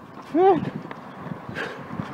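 A dog barks once, a single short bark about half a second in.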